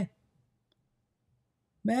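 Near silence between two sentences of a woman's read-aloud narration, her voice trailing off at the start and resuming near the end, with one faint click about a third of the way in.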